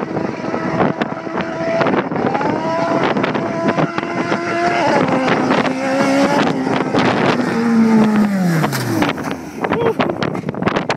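All-motor 2.6-litre K24-stroker four-cylinder in a Honda Civic EG, running on individual throttle bodies through a hood-exit header, accelerating hard down the street. Its pitch climbs in steps through the gear changes and it grows louder as it approaches. Its pitch drops away as it goes past near the end.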